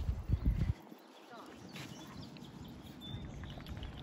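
Low rumble of wind on the microphone, heaviest in the first second, then a faint hush with faint sounds of dogs playing on the sand.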